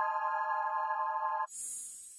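Outro music: a steady held chord that cuts off suddenly about one and a half seconds in, followed by a bright, high, hissy swish.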